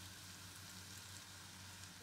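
Near silence: a faint, steady hiss over a low hum, with no distinct sounds.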